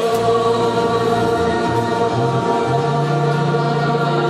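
Gospel choir singing held chords at full volume, coming in loudly at the start, with a low part stepping upward underneath.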